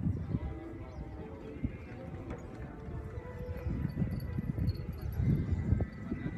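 Horse's hooves thudding irregularly on a sand arena, heaviest near the start and again near the end, with a faint voice in the background.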